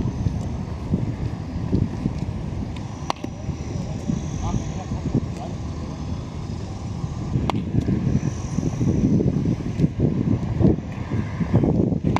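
Gusty wind rumbling on the microphone, with three sharp cracks about four seconds apart from a bat hitting ground balls for fielding practice.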